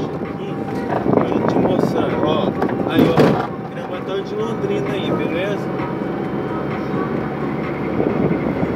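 Engine and road noise inside a small car's cabin while driving at steady speed, with a person's voice talking over it. There is a brief louder noise about three seconds in.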